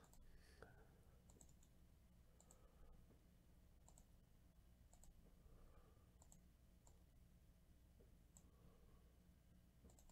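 Near silence with faint computer mouse clicks, single and paired, scattered every second or so.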